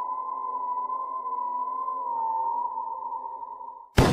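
A sustained eerie electronic tone from a soundtrack: a steady high drone that wavers slightly in pitch. It fades out just before the end, and a loud sudden hit of noise begins right at the end.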